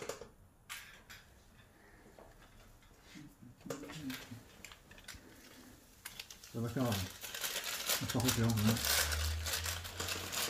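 Clear plastic masking sheet crinkling and rustling as it is handled, quiet at first and growing louder and denser over the last few seconds.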